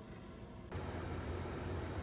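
Faint steady background hum and hiss. It steps up abruptly under a second in, as at an edit in the recording.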